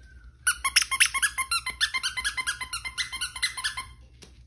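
Squeaky plush dog toy squeezed over and over, about six squeaks a second, starting about half a second in and stopping just before the end.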